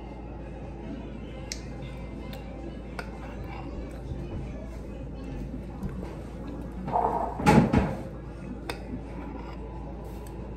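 Metal spoon clinking and scraping in a ceramic bowl of ice cream: a few light clinks spread out, with a louder short clatter of sound about seven and a half seconds in.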